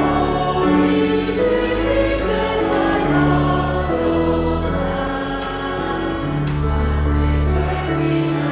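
A congregation singing a hymn together over accompaniment that holds long, low sustained notes, moving from note to note every second or so.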